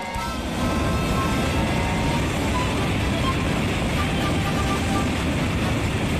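N700S Shinkansen running past the platform at speed: a loud, steady rush of air and rolling noise that builds about half a second in and then holds.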